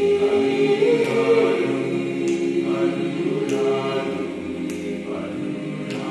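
Mixed chamber choir singing a cappella, holding full sustained chords that move from one to the next every second or so, with no clear words.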